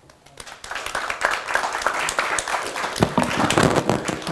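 Audience applauding: scattered claps begin just after the start and swell within about a second into steady applause.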